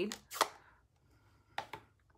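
Two short sharp plastic clicks, about a second and a quarter apart, as a Stampin' Up! ink pad case is handled and its lid is snapped open.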